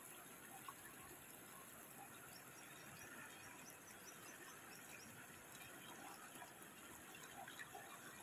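Faint, steady rush of a shallow river running over stones and around boulders.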